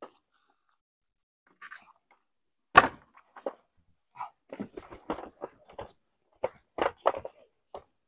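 A roll-out car-side awning being opened from its roof-rack bag. There is a sharp knock about three seconds in, then a run of irregular clatters and knocks as the canopy fabric and its pole are pulled out.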